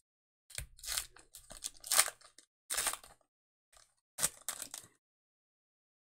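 Foil trading-card pack wrapper being torn open and crinkled by hand, in about four short crackling bursts.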